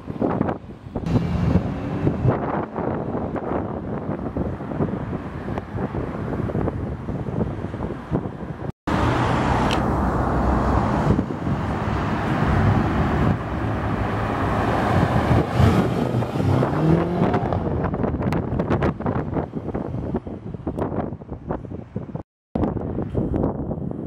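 Car engines and tyre noise of street traffic, with engine note rising as cars accelerate, and wind buffeting the microphone. The sound breaks off for a moment about nine seconds in and resumes with another passing car.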